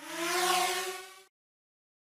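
A cartoon transition sound effect lasting just over a second: a whoosh with a rising tone in it that swells and then fades out.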